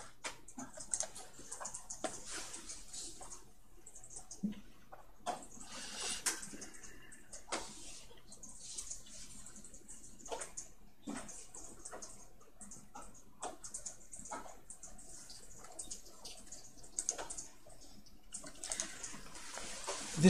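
Faint room noise: a low steady hum with irregular soft clicks and rustles scattered throughout.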